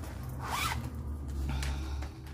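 A zipper being pulled, one main quick pull about half a second in and a shorter one about a second and a half in, over a low rumble.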